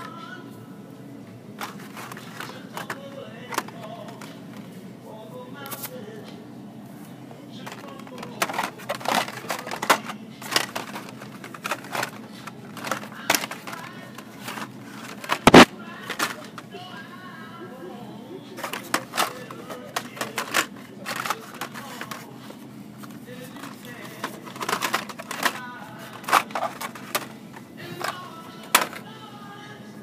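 Hot Wheels blister-pack cards clacking against each other and against the peg hooks as they are flipped through: a string of sharp plastic clicks and knocks coming in clusters, the loudest about halfway through. Background music plays under it.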